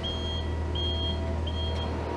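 Electronic warning beeper of shipyard machinery sounding in a regular pattern, three high beeps in two seconds, over a steady low hum.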